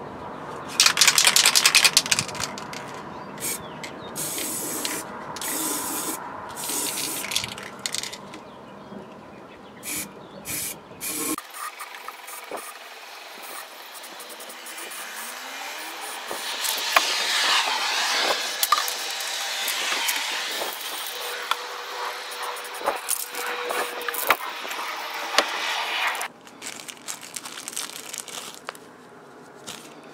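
Aerosol spray-paint can hissing as red paint goes onto a clear plastic jar: a very loud short burst of noise about a second in, several short sprays, then one long spray of about ten seconds in the second half.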